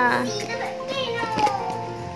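A young child's high, wavering voice sliding in pitch, fading out in the first half-second, with softer gliding vocal sounds after it, over steady background music.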